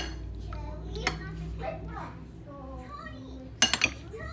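A quick cluster of clinks from dishes and glassware being handled near the end, with a single lighter clink about a second in. Faint children's voices run underneath.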